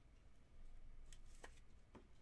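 Near silence with a few faint clicks and rustles of a trading card in a clear plastic holder being handled.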